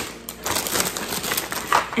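Plastic packaging crinkling as a bag of egg hunt fillers is handled, a dense run of crackles that thickens about half a second in.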